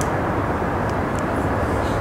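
Steady low background rumble, with a few faint ticks over it.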